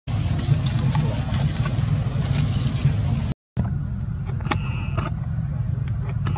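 Steady low rumble from the outdoor background, cut off by a brief silence a little over three seconds in. About a second later a macaque gives a short high-pitched call lasting about half a second.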